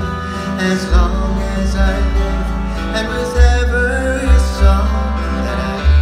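Live Hawaiian band music: upright bass and plucked acoustic string instruments with a voice singing, the bass heavy in the mix.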